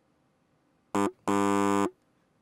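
Wrong-answer buzzer sound effect: a short buzz then a longer one, about a second in, marking a rejected verdict.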